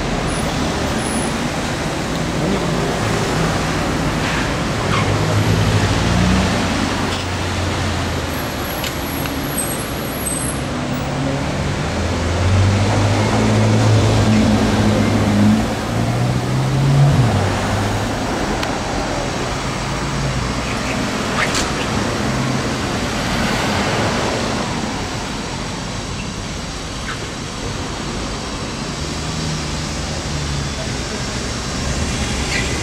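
City street traffic with cars passing at low speed. One car's low engine note grows and peaks with a short rise a little past halfway, then fades back into the road noise.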